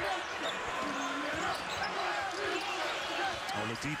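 Live basketball court sound in a large arena: steady crowd murmur, short squeaks from sneakers on the hardwood floor and a ball being dribbled.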